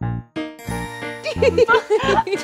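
Upbeat children's music jingle with a bouncy beat of about three pulses a second and tinkling, bell-like notes; a warbling melody joins in about halfway through.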